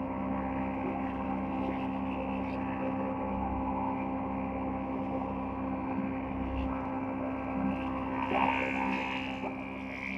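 Multi-head wood planing machine running with a steady hum as balsa boards are fed through it, with a louder cutting noise about eight seconds in.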